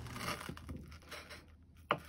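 A knife cutting through the crisp, fried breadcrumb crust of a sushi roll: a faint crunchy crackle that fades out about halfway through, then a short sharp click just before the end.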